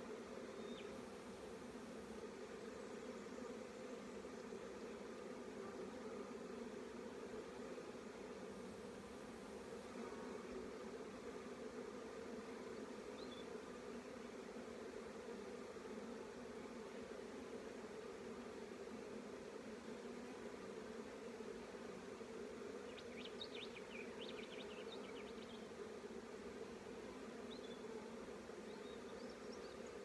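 Steady hum of many honeybees buzzing around an opened hive and its lifted brood frames. A few brief scratches come about two-thirds of the way through.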